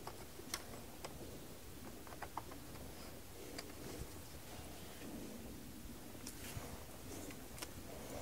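Faint, irregular small clicks and ticks as needle-nose pliers work a spring hose clamp and rubber fuel hose off a fuel pressure regulator.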